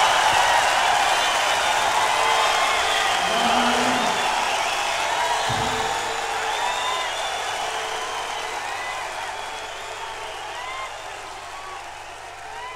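Live concert audience applauding, cheering and whistling after a rock song ends, with a few shouts. The crowd sound fades out steadily over the whole stretch, the end-of-track fade of a live album played from vinyl.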